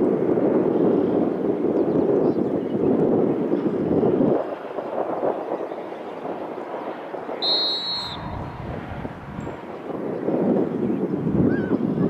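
Wind buffeting the microphone, a gusty low rush that eases off about four seconds in and picks up again near the end. A referee's whistle gives one short, high blast about seven and a half seconds in.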